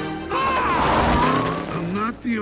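Film music with a car racing past, loudest from about half a second to a second and a half in.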